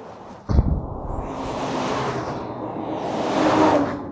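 Heavy trucks passing close by on a highway. A sudden low thump about half a second in, then tyre and engine noise that swells to its loudest near the end and begins to fade.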